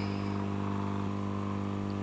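Hot-air SMD rework station's air blower running with a steady, even hum.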